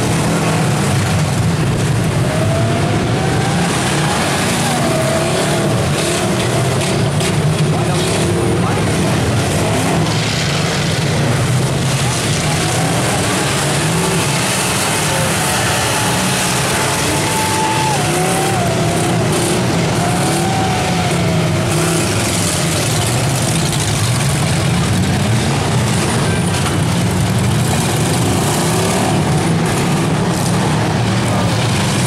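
Several demolition derby cars' engines running and revving together, with their pitch repeatedly rising and falling as the drivers push into one another.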